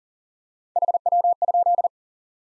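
Morse code sent at 40 words per minute as a keyed single-pitch beep: a fast run of dots and dashes lasting about a second, starting just under a second in. It is the code for the QSO element "how copy".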